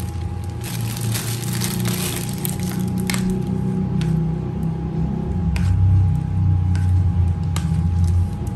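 A metal spoon clicking against a ceramic bowl about four times, spread out over several seconds, as a breaded ball is turned in beaten egg, over a low steady hum.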